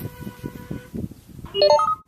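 Electronic jingle from a mobile phone: a short run of four beeping notes stepping upward in pitch, starting about one and a half seconds in and repeating right after. Before it come soft, irregular low thumps and rustling.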